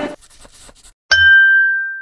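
A single bright bell ding, a notification-style sound effect with the subscribe animation. It is struck suddenly about a second in, with a brief low thump, and rings out and fades over about a second. It is preceded by a few faint soft ticks.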